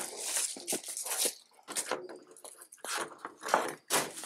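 Irregular rustling, scraping and short knocks of handling: a small solar panel being set on a tractor canopy roof and its cord pulled out.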